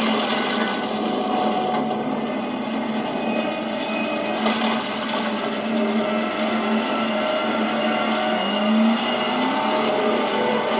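Film sound effects of a large bus sliding on its side along a rocky cliff edge: steady metal scraping and grinding against rock, with a short rising whine near the end. Heard as played through a screen's small speakers, thin in the lows and cut off in the highs.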